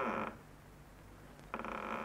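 Door hinges creaking: one drawn-out creak that ends just after the start, and a second creak that begins about one and a half seconds in.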